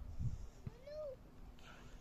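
Animal calls: one arched call that rises and then falls in pitch about halfway through, and another starting near the end. A low thump sounds near the start.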